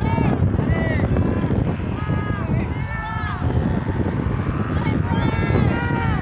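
Strong wind buffeting the microphone in a steady low rumble, with people shouting and calling out in short bursts over it.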